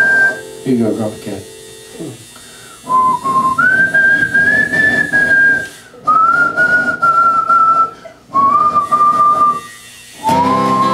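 A man whistling a slow melody in long held notes with short breaks between them, over quiet acoustic guitar.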